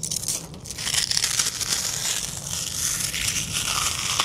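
Brittle charcoal of a carbonized Twinkie crumbling as it is crushed and rubbed between the fingers: a continuous fine crackling.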